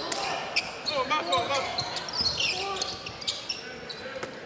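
Live basketball game sounds on a hardwood court: the ball bouncing in short sharp knocks, brief high sneaker squeaks, and players' and crowd voices over a steady murmur.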